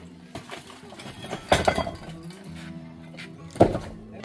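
Two sharp strikes of a metal bar breaking up concrete blocks and rubble, about two seconds apart, with a clinking edge.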